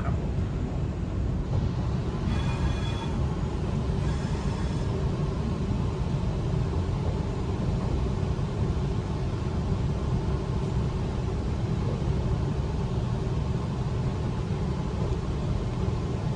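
Steady rumble of a Waratah A-set double-deck electric train, heard from inside the carriage as it rolls slowly through the yard. A short high whine sounds twice a few seconds in.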